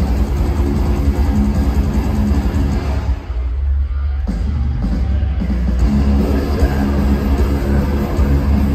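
A thrash metal band playing live and loud through a festival PA, with electric guitars, bass and drums, heard from within the crowd. About three seconds in, the band thins to little more than the low end for a moment, then comes crashing back in.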